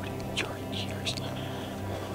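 A man whispering over background music that holds a steady low chord.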